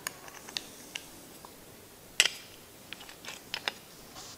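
Light plastic clicks and taps from handling a small screw-on tire-pressure sensor and its cover, with one sharper click about two seconds in and a few quick clicks near the end.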